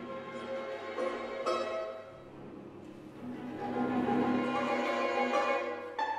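A string quartet of two violins, viola and cello playing. A low note is held under the upper parts, then the music swells louder through the second half.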